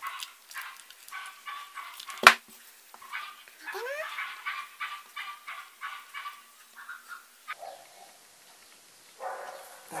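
A dog yipping and whining in a run of short, high calls, some rising in pitch, with a single sharp knock about two seconds in.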